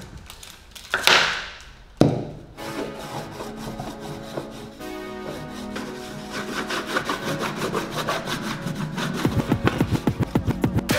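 A wax candle rubbed over a plywood board, a dry scraping of wax on wood, with a sharp click about two seconds in. Background music comes in soon after and carries on over the rubbing.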